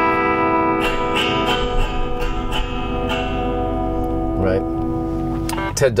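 Electric guitar played clean: a chord left ringing and slowly fading, with a few single notes picked over it in the first three seconds.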